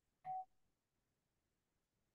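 One short electronic beep, a single tone lasting about a fifth of a second, a quarter second in; otherwise near silence.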